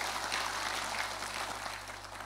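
Congregation applauding, the clapping dying away gradually.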